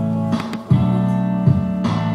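Instrumental karaoke backing track with strummed guitar chords, with a short dip just after half a second in.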